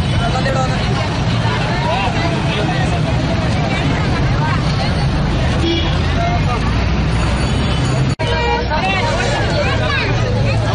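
Crowd hubbub: many voices talking over one another, over a steady low rumble. The sound cuts out for an instant about eight seconds in.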